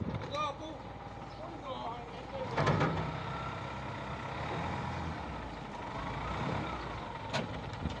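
Caterpillar wheel loader's diesel engine running steadily under load as it tows a derelict tank truck on a cable, with a louder surge about three seconds in.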